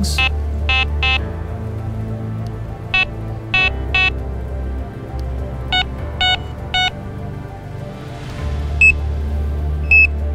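Fox Mini Micron X carp bite alarm giving short electronic beeps in four runs of about three, each run in a different tone as the alarm is stepped through its four tone settings; the last run is much higher and purer. Background music with a steady bass plays underneath.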